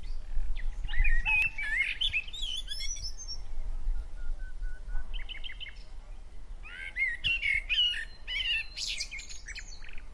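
Small birds chirping and singing in quick rising and falling notes, busy in the first few seconds and again near the end with a lull in between, over a low steady hum.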